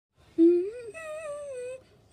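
A person humming: a short low note about half a second in, the loudest moment, slides up into a higher note that is held and wavers for about a second, then drifts down and stops just before the end.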